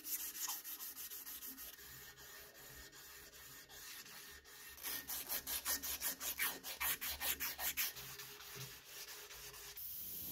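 Strip of abrasive cloth being drawn back and forth around a brass faucet spout held in a vise, hand-sanding the metal. The rubbing strokes are lighter at first, then from about halfway through become louder and quicker, about four a second, and stop just before the end.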